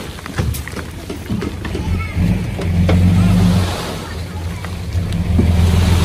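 Dump truck's diesel engine running and revving up twice to drive the hydraulic hoist as the tipping bed unloads soil, with a few knocks from soil and stones tumbling out.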